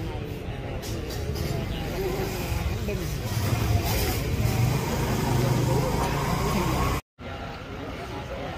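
Indistinct voices over a low rumble of street traffic. The rumble swells in the middle, and the sound cuts out suddenly for a moment near the end.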